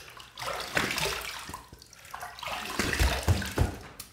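Water splashing at a sink as the face is rinsed with handfuls of water after a shaving pass, in two uneven bouts with a few dull thumps near the end.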